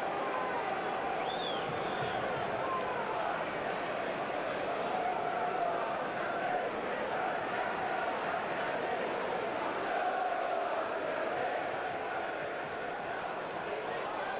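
Football stadium crowd: a steady mass of voices, with fans chanting in long held notes.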